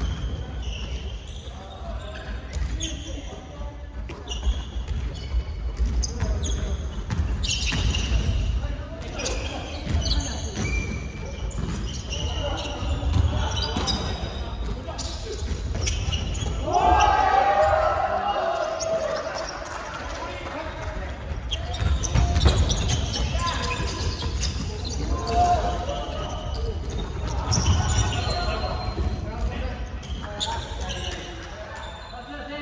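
Basketballs bouncing on a hardwood gym floor in repeated dribbling thuds, echoing through a large hall. Players' indistinct shouts and calls rise and fall over it, loudest about halfway through.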